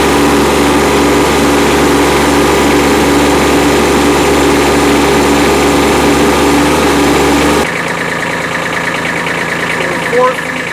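Kubota B2301 compact tractor's three-cylinder diesel running steadily at high revs while the front-loader hydraulics lift a heavily loaded pallet. About three-quarters of the way through, the engine note drops abruptly to a lower, quieter level as the lift ends.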